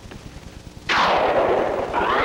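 Spaceship rocket engine sound effect during a landing: a sudden loud rushing blast comes in about a second in and sinks in pitch, over faint tape crackle.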